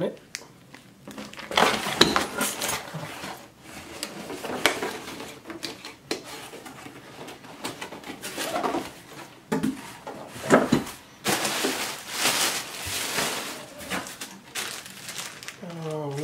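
Foil and plastic packaging of a brake pad kit rustling and crinkling in the hands, with light clinks of the metal pads and fitting hardware inside and the knock of the box against a cardboard carton.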